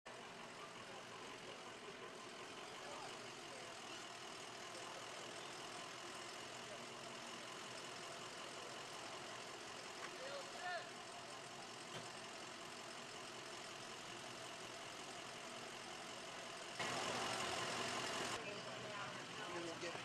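Emergency vehicle engine idling steadily, with indistinct voices of people around it. A louder rush of noise lasts about a second and a half near the end.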